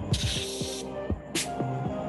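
A short hiss of hand sanitiser sprayed from a wrist-worn dispenser, lasting under a second at the start, over background music with a steady beat.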